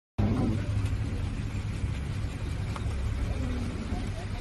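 Low, steady rumble of a running vehicle engine, with faint voices in the background.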